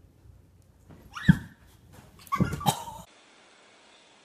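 An animal calling: one short, loud call about a second in, then a quick run of several calls, ending abruptly.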